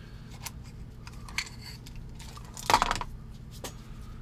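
Faint, irregular clicks and a short rustle about three quarters of the way through from small hand tools being picked up and handled, with a toothpick brought toward an open watch movement.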